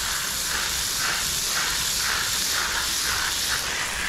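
Garden hose spray nozzle running steadily, water hissing and splashing onto the potting soil of fabric pots.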